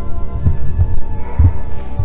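Organ music with sustained, held chords, and irregular low thuds underneath.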